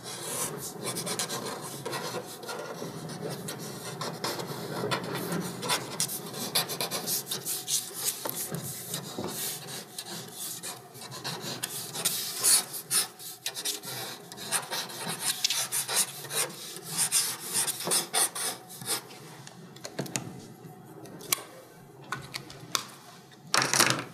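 Pencil sketching on paper: a steady run of quick, scratchy strokes and rubbing shading, easing off near the end.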